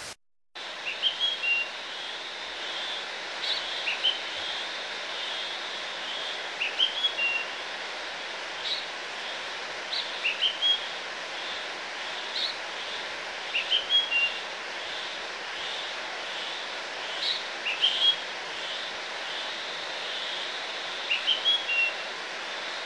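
A bird calling in short groups of quick rising chirps, a group every three to four seconds, over a steady rushing hiss.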